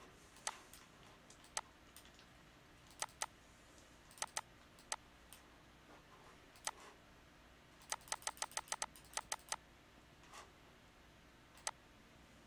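Computer mouse clicking: single sharp clicks now and then, and a quick run of about ten clicks a little past the middle, like scroll-wheel notches zooming the map.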